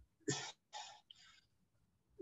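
A man's three short, breathy huffs from the throat, about half a second apart and quiet next to his speech.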